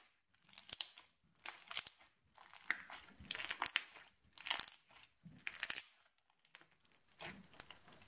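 Crunchy slime packed with foam beads being squeezed and pressed by hand, giving short crunching, crackling bursts about once a second.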